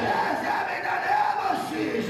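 A man praying loudly and fervently into a microphone, his voice rising and falling without clear words, with other voices praying aloud around him.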